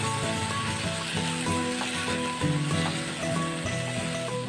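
Potatoes, peas and yogurt masala sizzling in hot oil in a non-stick kadai as a spatula stirs them, under steady background music.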